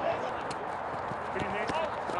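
Players' voices shouting on a football pitch during play, mostly wordless calls that build near the end, with a few short knocks from the ball being played and feet on the turf.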